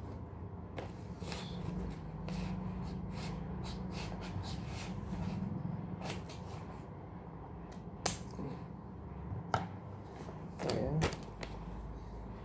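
Scissors snipping through a paper envelope: a quick run of small cuts and paper rustling over the first half, then a few separate paper-handling clicks. A steady low hum runs underneath.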